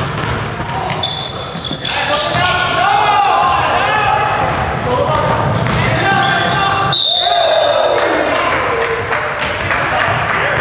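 A basketball game on a hardwood gym floor: the ball bouncing as it is dribbled, sneakers squeaking, and players calling out, all echoing in a large hall.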